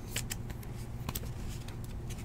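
Panini Prizm football trading cards being handled and slid through a stack by hand: a few short, crisp snaps and rustles of the slick card stock, over a steady low hum.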